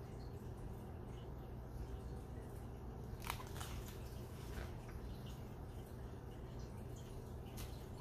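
Pages of a hardcover picture book being handled and turned, a few soft brief rustles about three seconds in, again a little later and near the end, over a low steady room hum.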